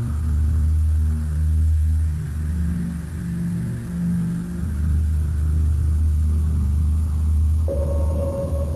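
TV station ident music passed through a heavy 'Fat' audio effect: deep, low sustained notes that step from one pitch to another. A higher steady tone comes in suddenly near the end.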